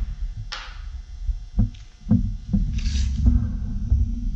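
A handful of light clicks and short scrapes from a bolt and a tape measure being handled, over a steady low hum.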